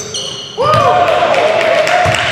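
Indoor basketball game: a basketball bouncing and players' voices echoing in a gym. About half a second in it gets suddenly louder, with brief gliding squeaks.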